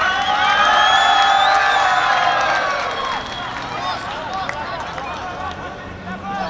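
Football spectators shouting: several voices hold one long drawn-out shout for about three seconds, then it breaks up into scattered shouts and chatter.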